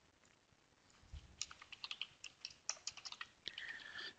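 Typing on a computer keyboard: a quick, uneven run of faint keystrokes that starts about a second in.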